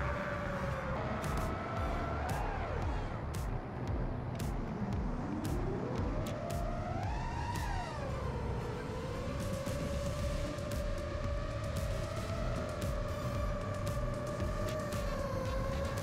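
Brushless motors and 7-inch three-blade props of an X8 octocopter whining in flight. The pitch sags sharply about four seconds in as the throttle is cut for a dive, climbs to a high peak near the middle as the throttle is punched to pull out, then settles back to a steady hover-cruise tone.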